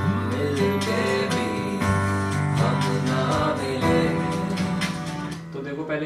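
Yamaha digital piano played with both hands: held chords over a steady bass with a melody line on top, easing off shortly before the end.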